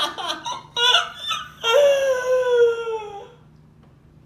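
A man laughing hard: a few short bursts of laughter, then one long, high-pitched, squealing laugh that falls slightly in pitch and dies away a little after three seconds in.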